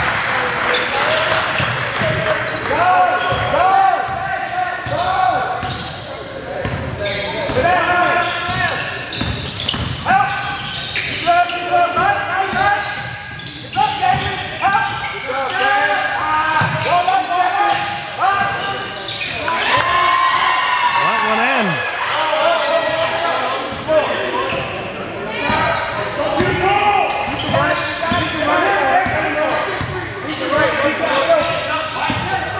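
A basketball dribbled and bouncing on a hardwood gym floor during live play, mixed with players' calls and shouts that carry through a large gym.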